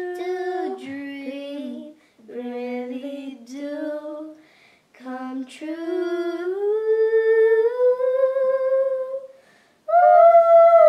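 A girl singing unaccompanied in short melodic phrases with brief breaths between them. The last phrase is a long note that slides upward and is held.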